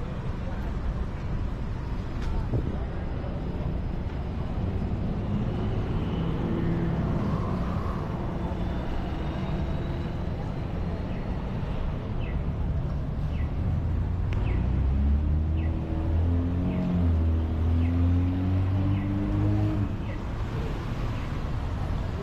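City street traffic noise with a steady low rumble. In the second half a heavy vehicle's engine grows louder and rises slightly in pitch as it pulls away, among voices of passers-by.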